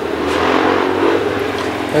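Small refrigeration compressor running with a steady hum, under a swell of rushing noise that builds over the first second and then eases.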